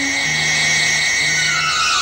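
Dramatic film background score: a held high-pitched note, joined in the second half by a tone sliding down in pitch, over short repeated low notes.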